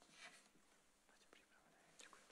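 Near silence: quiet church room tone, with a faint breathy rustle about a quarter second in.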